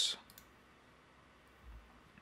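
A couple of faint computer mouse clicks about a third of a second in, closing a pop-up, then quiet room tone with a soft low thump near the end.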